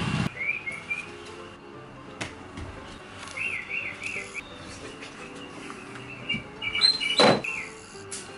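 A small bird chirping in short runs of quick rising-and-falling notes, with a single sharp thump about seven seconds in.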